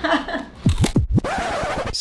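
An editing transition sound: a few quick downward-and-upward pitch sweeps like a record scratch or tape rewind, then about a second of static hiss that cuts off suddenly.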